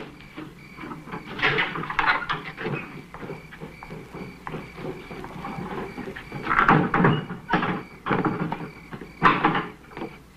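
A fist knocking on a wooden door in two rounds of several sharp knocks, the second round starting about six and a half seconds in.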